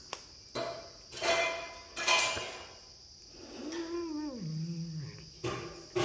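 A kitten chewing and crunching on a raw chicken foot: several short, loud crunching bursts. About halfway through comes a short low call that rises, falls and then holds on a lower note.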